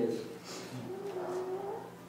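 A man's voice holding one long, low hum for about a second and a half, a wordless pause sound after a spoken word.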